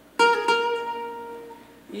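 Cavaquinho playing a short three-note phrase, B-flat, A-flat, B-flat, in quick succession, then ringing out and fading.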